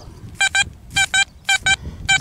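XP Deus metal detector sounding a strong, repeatable target signal as the coil sweeps over a buried coin. It gives three pairs of short, clear, high beeps, one pair about every half second.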